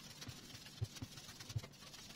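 Faint, soft low thuds of soft dough being squeezed and pressed down by hand onto a stone worktop as it is divided into loaves, several at an uneven pace.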